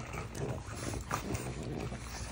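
French bulldogs biting and chewing a slice of cantaloupe held in a hand, with soft, irregular wet mouth sounds.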